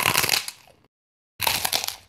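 Two loud bursts of crunching, like crisp food being bitten close to the microphone: the first starts the moment the sound comes in and dies away within a second, the second comes in about a second and a half later, with dead silence between them.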